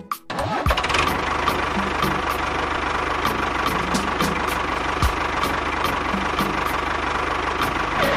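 A vehicle engine starts about a quarter second in and then runs steadily, cutting off at the end.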